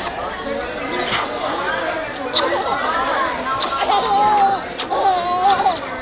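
A six-month-old baby laughing and squealing, with people chattering in the background.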